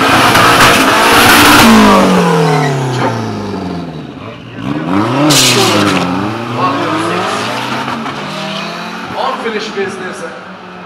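Drag-racing car engines revving hard and accelerating, with tyre squeal. It is loudest in the first two seconds, the engine pitch falls away, then rises and drops again sharply about five seconds in, and the sound slowly fades toward the end.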